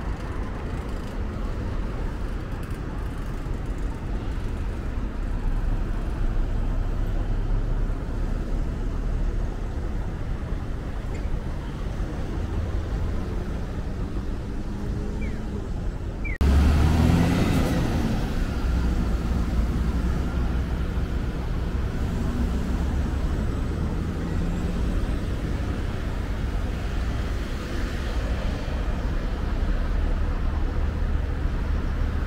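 Road traffic at a city intersection: a steady rumble of cars and buses passing. It jumps suddenly louder a little past halfway and stays so.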